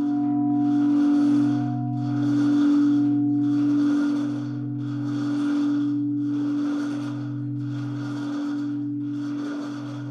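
Church bells ringing in a tower, each bell striking about once a second over a long, low humming ring that carries between the strikes.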